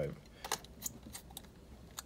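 A few light clicks and taps from a hard drive bracket being seated and fastened into a laptop's drive bay. The sharpest click comes about half a second in, followed by three fainter ones.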